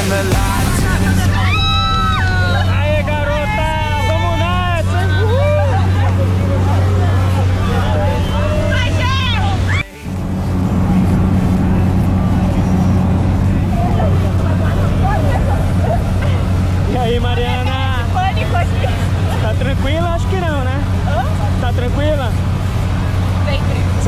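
Single-engine light aircraft's engine and propeller droning steadily at full power during the takeoff roll and climb, heard from inside the cabin, with voices over it. The drone cuts out for a moment about ten seconds in, then resumes.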